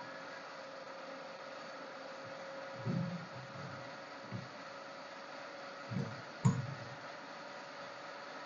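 A DC shunt motor running up toward speed as its three-point starter handle is eased across the contacts: a faint, steady hum with a thin steady tone. A few soft knocks come between about three and six and a half seconds in.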